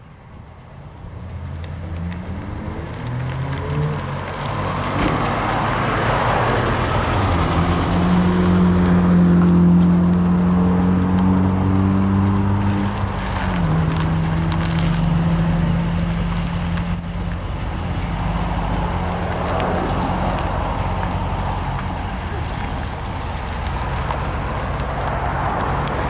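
Classic car engines at low speed. In the first few seconds one engine rises in pitch as it pulls away. Then the 1957 Chevrolet's engine runs steadily, loudest as it rolls up close, and drops a little in pitch about halfway through.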